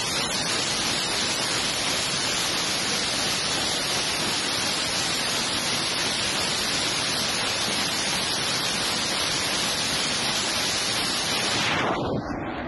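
Truck-mounted multiple rocket launcher firing a salvo: a steady, unbroken rushing roar of rockets leaving one after another, with no separate bangs standing out.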